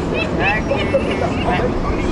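Steady city street traffic noise of passing vehicles, with faint voices in the background.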